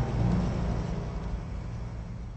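A deep, low rumble that fades steadily over the two seconds.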